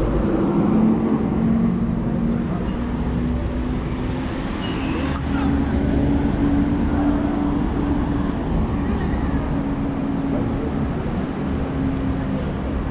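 Outdoor traffic noise with a vehicle engine running as a steady low drone that rises a little in pitch about halfway through.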